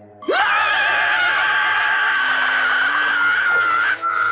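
Squidward's long cartoon scream. It starts about a quarter second in with a sharp upward swoop, then is held loud at a high, wavering pitch.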